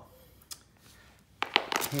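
A plastic bag of small crankshafts being handled: it starts crinkling and rustling about a second and a half in, with a couple of sharp clicks as it is picked up.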